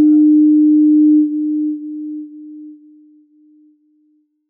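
A single pure electronic tone for a station logo ident, held loud and steady for a little over a second, then dying away in a series of fading echoes about every half second.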